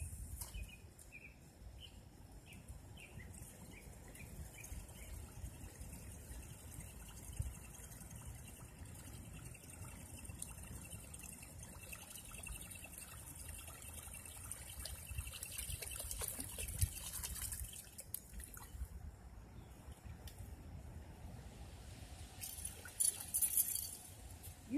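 Faint splashing and trickling of water as a dog wades in the shallows at the pond's edge.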